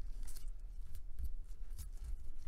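Short scraping and rustling strokes of nitrile-gloved hands handling a smartphone on a work mat, three or four in all, over a steady low hum.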